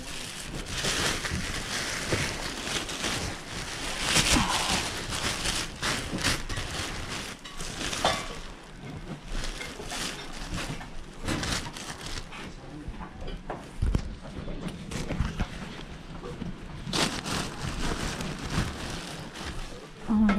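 Clear plastic bag rustling and crinkling as it is handled and filled with stuffed toys, with irregular small crackles throughout.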